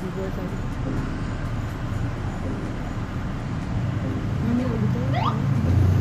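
Street traffic: a steady hum of passing vehicles, with a motorcycle engine getting louder as it approaches near the end.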